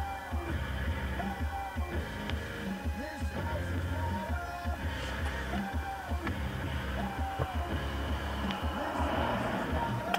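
Music playing over a car stereo, with a heavy, steady bass and short held melody notes above it.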